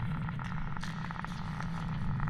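Steady low engine rumble of a vehicle, with scattered short crackles and clicks over it.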